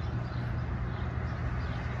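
Steady low rumble of road traffic noise, even throughout with no distinct events.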